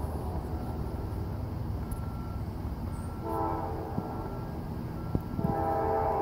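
Distant horn of a CSX GE AC4400CW (CW44AC) diesel locomotive, blowing for a grade crossing as the train approaches at track speed. A short blast about three seconds in is followed by a longer blast starting near the end.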